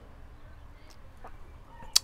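Soft, quiet puffing on a tobacco pipe, with a sharp lip-smack click near the end as the stem leaves the mouth.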